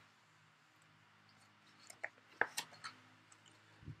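A picture book's page being turned by hand: mostly quiet, then a few faint paper clicks and soft rustles about halfway through.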